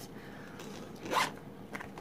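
A brief zip, about a second in, as the zipper of a small cosmetic bag is pulled open, over faint room tone.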